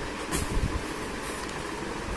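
A plastic-wrapped saree packet handled and dropped onto the pile, giving a brief rustle and knock about a third of a second in, over a steady low background rumble.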